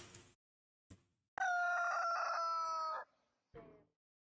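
A single long crow, like a rooster's, held steady for about a second and a half with a slightly falling pitch. A short falling note follows near the end.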